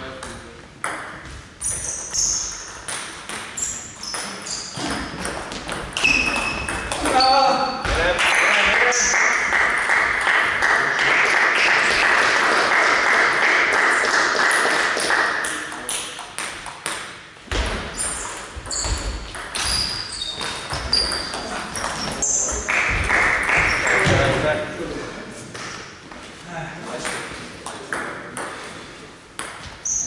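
Table tennis ball bouncing on the table and being struck by bats: a scattered series of short, sharp clicks, several with a brief high ping. A longer stretch of voices fills the middle.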